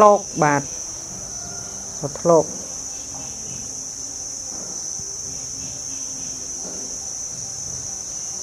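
Steady, high-pitched drone of insects, an unbroken chirring heard throughout, with a man's voice speaking briefly at the start and about two seconds in.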